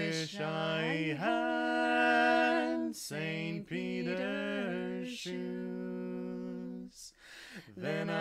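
Two voices singing a sea shanty a cappella in harmony, with long held notes and short breaths between phrases.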